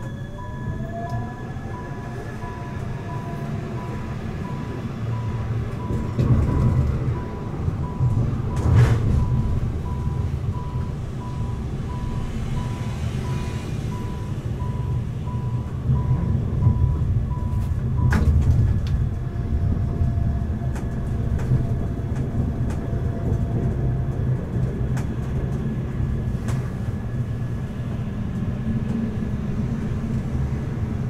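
Siemens Avenio low-floor tram running, heard from on board: the electric drive's whine rises in pitch over the first couple of seconds as it pulls away, over a steady low rumble of wheels on rail. Two sharp clacks from the wheels and track, near 9 and 18 seconds, and a faint pulsed high tone that stops about 18 seconds in.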